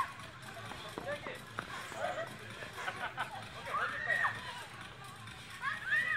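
Mixed voices of children and adults chatting and calling out, with high-pitched children's calls about four seconds in and again near the end.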